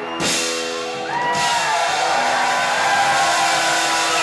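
A rock band's final crash lands with drums and cymbals, then the electric and acoustic guitars' last chord rings on after the cymbal wash stops about a second in. Audience shouts and cheers rise over the ringing chord.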